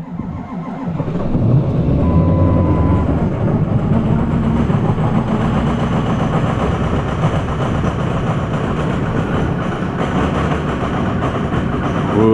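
Cold start of a pickup truck engine that has sat for two days in below-zero cold: it comes up over about the first second and then keeps running steadily.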